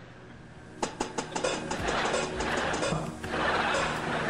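Edited music track with percussion: quieter for about the first second, then a quick run of sharp clicks that leads into a busy, hissy beat.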